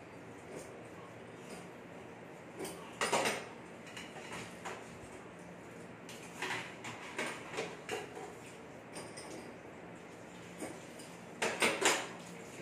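Dishes and metal utensils clinking and clattering as they are handled in a kitchen sink, in a few short bursts: one about three seconds in, a cluster midway, and the loudest near the end.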